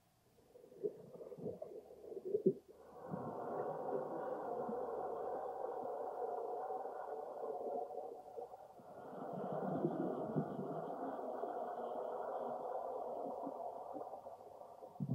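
A few soft knocks, then a sustained drone of several steady pitches that swells in about three seconds in, dips briefly just past the middle and swells again.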